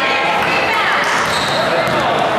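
Spectators and players talking in a large, echoing gymnasium, with a basketball bouncing on the hardwood court.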